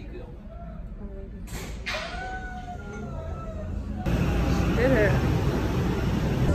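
People's voices in the background, with a single drawn-out call in the middle. About four seconds in it cuts to a louder, steady rushing noise with voices over it.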